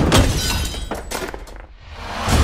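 Glass shattering and things crashing: several sharp smashes over about a second and a half, then dying away.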